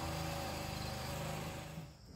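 Plate compactor's small petrol engine running steadily as the plate vibrates over loose soil to compact it, dropping away near the end.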